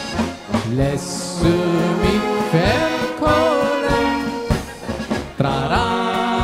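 Live brass band with accordion playing a polka: a low oom-pah bass line under a regular beat, with brass and accordion on top and a man's singing voice riding over the band.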